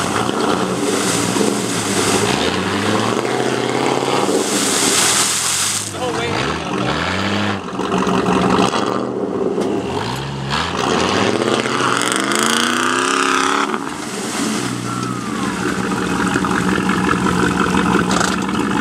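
Jeep engines revving in repeated rising surges under load during a tow-strap recovery, with mud tyres spinning and throwing mud in deep clay.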